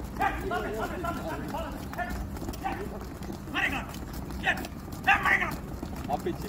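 Men's voices calling out in short shouts scattered through the drill, loudest near the end, with no clear words.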